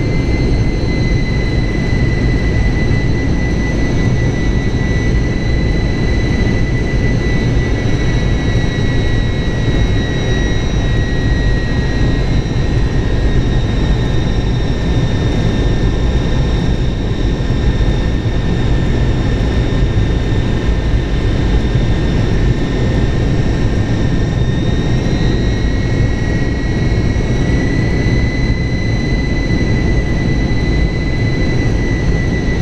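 Ilyushin Il-76's four turbofan engines running steadily during a low pass over the runway, a deep rumble under a high engine whine. The whine sags slightly in pitch midway and comes back up near the end.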